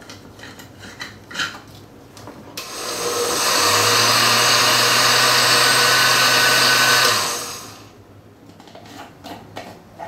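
Oster countertop blender running with a glass canning jar fitted as its blending jar, pulping habaneros in grain alcohol: it starts about two and a half seconds in, runs evenly for about four seconds with a low motor hum under the whir, and winds down. Light clicks and knocks of the glass jar being handled come before and after.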